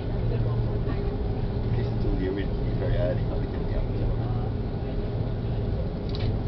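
Airbus A330-300 cabin noise while taxiing after landing: a steady low hum from the idling engines and the cabin air, with faint voices in the cabin.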